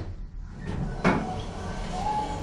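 Stainless steel sliding doors of a ThyssenKrupp hydraulic elevator opening, with a knock at the start and a louder clunk about a second in as the door operator drives them apart.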